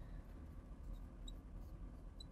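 Faint squeaks of a marker writing on a glass lightboard: a couple of short high squeaks about a second in, over low room noise.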